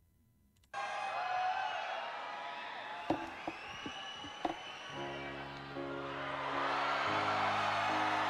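Live concert recording: an arena crowd cheering, with a few claps and whistles, then slow held piano chords begin about five seconds in.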